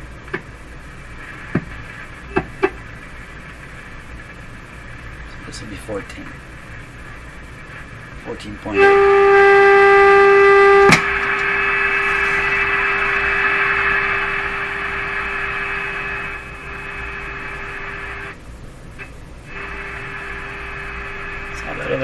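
Vintage tube shortwave receiver's speaker hissing with a few clicks from its controls. Then a loud steady mid-pitched test tone from a signal generator comes in suddenly as the set is tuned onto the generator's signal. About two seconds later it drops in level with a click and continues more quietly over the hiss, breaking off briefly near the end.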